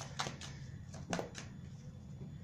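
Tarot cards being handled as they are drawn from the deck and laid down: four short, sharp card clicks in two pairs about a second apart, over a faint steady hum.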